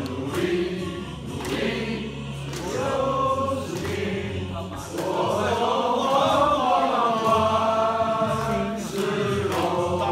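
A roomful of men singing a song together in unison, with long held notes in the middle.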